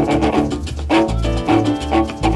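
Live charanga-style salsa band playing, with a repeating bass note about twice a second under rhythmic chord strikes.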